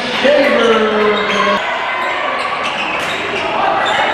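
Basketball dribbled on a hardwood gym floor, with sharp bounces and sneaker squeaks, mostly in the second half, echoing in a large gym. A voice calls out over the first second and a half.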